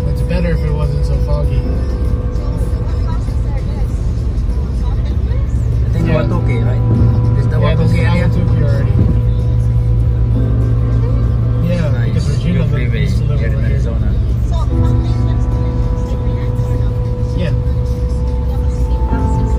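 Steady road and engine rumble inside a car cruising on a freeway, under music and a voice that come and go.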